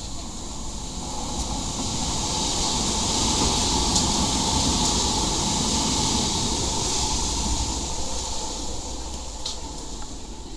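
National Express passenger train passing close by on the rails, its rumble and hiss swelling to a peak midway and fading as it goes, with a faint steady whine throughout.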